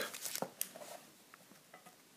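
Faint handling sounds of foil card booster packets and a small metal tin: light rustling and a few soft clicks and taps, mostly in the first second.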